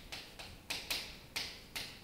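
Chalk writing on a chalkboard: a run of sharp taps and short strokes, about three a second.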